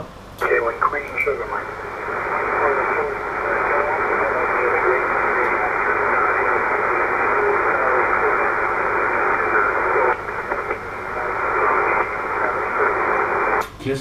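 Icom IC-7200 transceiver's speaker receiving 20-metre SSB: a steady band of hiss held inside a narrow voice passband, with a weak, garbled voice from a distant station buried in the noise and interference. It starts about half a second in and cuts off suddenly just before the end.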